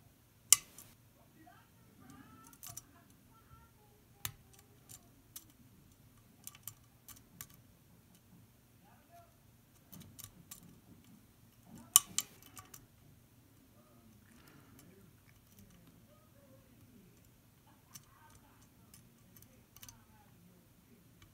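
Lock picking on a round E² lock cylinder: the metal pick and tension wrench clicking in the keyway, with scattered sharp clicks and two loud ones, about half a second in and about twelve seconds in. Faint voices from a movie in another room sit underneath.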